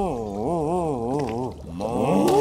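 A voice drawing out a long, wavering moan whose pitch wobbles up and down about three times a second. It breaks off briefly near the end and then starts again.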